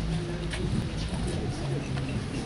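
Crowd murmur: many people talking quietly at once, voices overlapping and indistinct.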